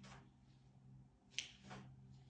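Soft rustles of a paperback book's pages being turned, with one sharp click about one and a half seconds in, over a faint steady low hum.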